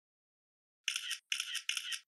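Scratchy, rasping sound effect in three quick bursts of about a third of a second each, starting about a second in. It is thin, with no low end.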